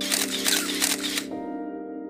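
Camera shutter sound effect: a quick run of clicks lasting about a second, then stopping, over soft sustained background music.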